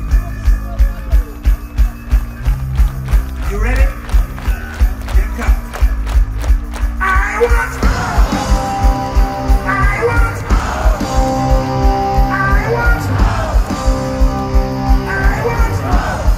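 Live power metal band playing loud on stage, heard from within the crowd: a steady drumbeat of about two beats a second over a sparse low accompaniment, then the full band with guitars comes in about seven seconds in.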